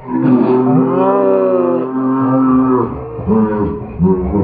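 A man's long, drawn-out cry of pain, held on one pitch for nearly three seconds, then a shorter cry near the end. It comes just after he has taken a punch.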